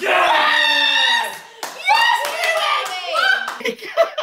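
Several people yelling and cheering together in excited, wordless shouts, breaking out suddenly as a penalty is saved, with a little hand clapping near the end.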